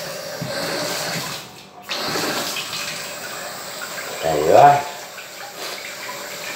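Kitchen tap running as hands are washed under it, a steady rush of water that briefly cuts out about a second and a half in. A short voiced sound is heard about four and a half seconds in.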